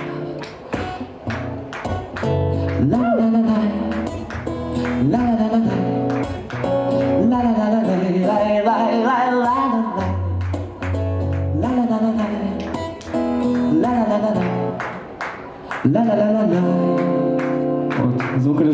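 A man singing with a strummed acoustic guitar in a live performance.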